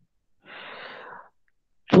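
A man's single breath drawn in, a short pitchless rush lasting under a second.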